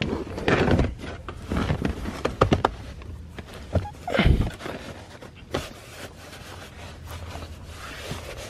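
A carpet floor mat being fitted into a car footwell and pressed flat by hand: rubbing and shuffling with scattered knocks, and one heavier thump about four seconds in.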